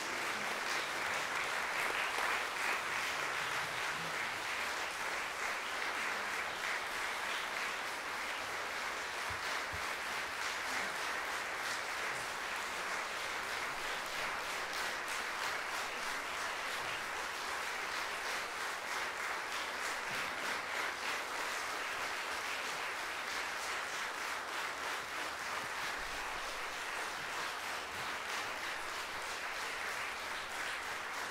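A large audience applauding: dense, steady clapping that eases off slightly toward the end.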